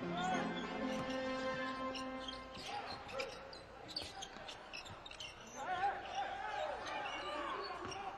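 Basketball game court sound: a ball being dribbled on the court, with scattered short knocks. A steady held tone sounds for about the first two and a half seconds, and short rising and falling squeaks come near the end.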